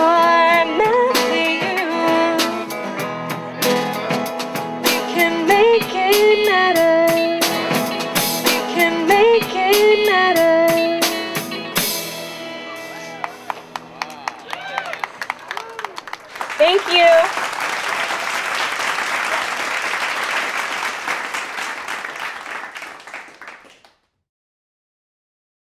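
Live band with a female singer, drums and electric guitar playing the end of a song, which stops about halfway through. Scattered claps and a shout follow, then applause that fades out.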